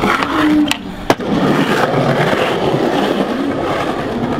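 Skateboard landing with a single sharp clack about a second in, then the urethane wheels rolling steadily over concrete pavement.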